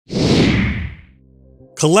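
A whoosh sound effect for a logo intro: one swoosh lasting about a second with a low rumble under it, fading out into a faint low tone. A man starts speaking near the end.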